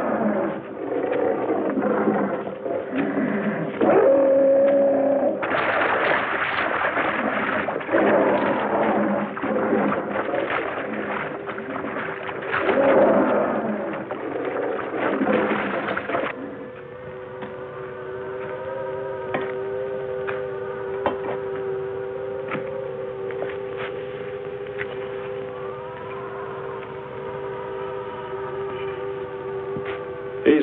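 Science-fiction film soundtrack: a loud churning, rushing noise with scattered cries for about sixteen seconds, cut off suddenly. After that comes a steady electronic drone of held tones with occasional gliding notes.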